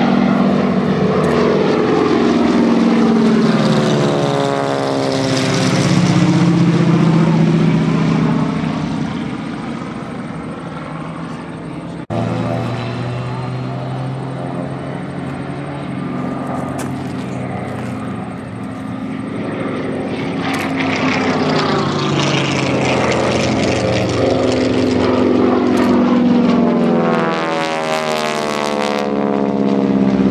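Propeller warbirds flying past: a P-51 Mustang's Rolls-Royce Merlin V12 and a radial-engined trainer in formation, their engine tones sweeping in pitch as they pass. After a sudden cut about twelve seconds in, a single radial-engined aircraft banks overhead, its engine swelling louder towards the end.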